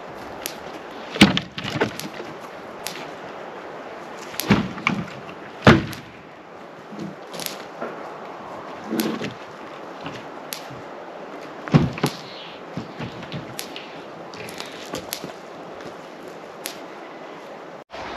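A wooden box shelter being carried and set down: a series of hollow wooden knocks and thuds, the loudest about a second in, twice between four and six seconds, and near twelve seconds, with smaller knocks in between.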